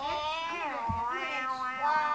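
A child's high, wordless sing-song vocalising, one continuous sound whose pitch slides up and down.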